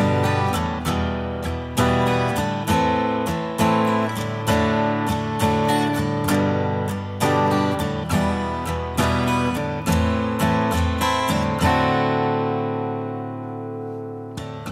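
Instrumental intro of an indie folk song: acoustic guitar strumming chords in a steady rhythm, with a chord left ringing and slowly fading near the end.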